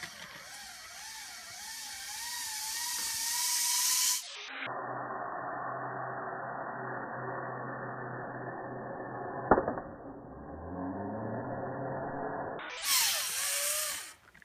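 Zipline trolley pulley running along the cable: a wavering whine that slowly rises in pitch as it gains speed. The middle part turns to a duller, lower hum with one sharp click, and rising tones return near the end.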